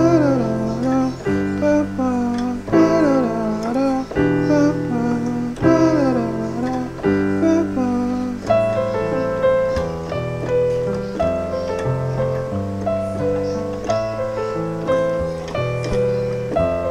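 Piano playing the song's chord progression, a bass note in the left hand under two-note chords in the right. For about the first seven seconds a voice sings the melody over it, with sliding, bending notes; after that the piano plays on alone.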